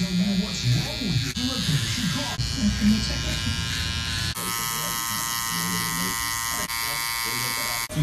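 Electric T-blade hair trimmer running with a steady buzz; the buzz becomes clearer and more prominent about four seconds in.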